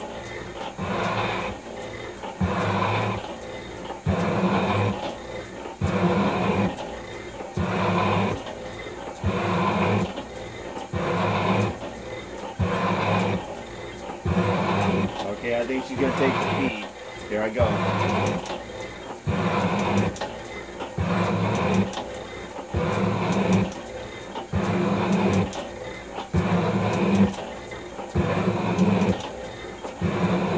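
Metal shaper ram stroking back and forth, the tool taking a heavy cut in a cast iron block about once every 1.7 seconds. Each cutting stroke is loud and the return stroke is quieter. The drive belt is slipping a little under the load.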